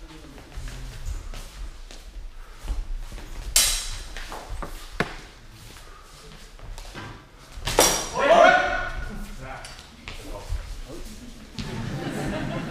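Steel practice swords clashing in a fencing exchange: a few sharp ringing strikes a second or more apart, over footfalls on a sports-hall floor that echoes. A man's shout comes just after the third strike, about eight seconds in.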